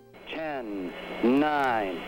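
A man's voice over a narrow-band radio link, a rocket-launch control transmission, with two long drawn-out stretches of speech.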